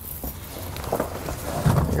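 Steel snow chain and its cables being handled with gloved hands against a car tire: faint rustling with a few light clicks, and a low muffled bump near the end.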